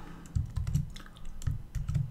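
Computer keyboard keystrokes as code is edited: a scatter of sharp clicks with a few heavier, dull thumps.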